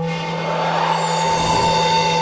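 Animated-logo sound design: a synthesized drone of several held tones over a shimmering hiss, starting suddenly with a hit.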